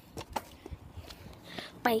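Faint scattered clicks and light knocks from a bicycle being ridden, with the phone held at the handlebars, ending in a girl's voice.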